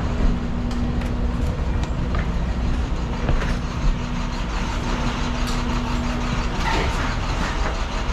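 Steady low mechanical rumble with a constant hum, as from an unseen idling motor; the hum stops about six and a half seconds in. A few scattered knocks over it.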